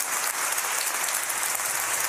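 Applause: steady clapping.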